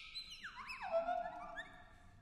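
Theremin playing a short solo run of steep downward swoops in pitch. The last swoop settles on a lower held note that fades away near the end.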